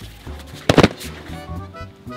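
One short, loud slam about two thirds of a second in as a person is thrown down onto foam training mats by a wrist lock, over background music.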